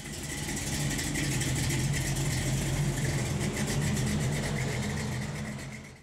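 A vehicle engine idling steadily, fading out near the end.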